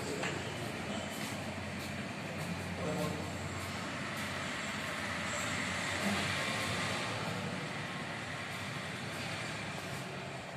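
Steady hiss and bubbling of an aquarium air curtain, air streaming up through the water and breaking at the surface.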